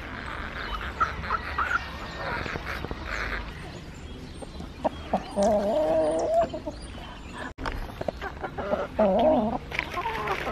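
Free-range chickens and roosters clucking close by as they crowd around to be fed. There is a longer drawn-out call about five seconds in and a shorter one near the end.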